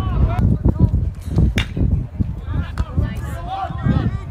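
Spectators' voices calling out over a steady low rumble of wind on the microphone, with one sharp crack about one and a half seconds in.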